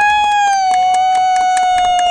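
A long, loud, high-pitched "woooo!" cheer held steady on one note, joined by a second, lower "woo" a little under a second in, over hand claps several times a second.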